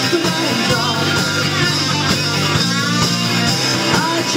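Live folk-rock band playing loudly, with electric guitar and drums.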